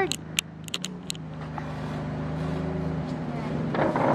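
A motor vehicle engine running close by, a steady low hum that slowly grows louder. A few light clicks in the first second, and a short scrape near the end.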